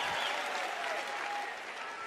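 Audience applauding in response to a joke, the applause fading away.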